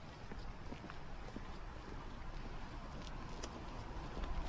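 Footsteps of two people walking on a concrete sidewalk, hard heels clicking in an uneven pattern, the steps growing louder near the end, over a low steady rumble.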